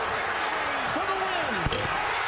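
TV basketball broadcast: a play-by-play commentator calls the final seconds of a game over steady arena crowd noise.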